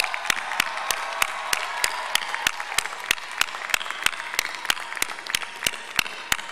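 Crowd applauding, with sharp claps in a steady rhythm of about three a second standing out above the general applause.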